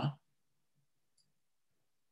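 The end of a man's spoken word, then near silence with one faint, brief click about a second in.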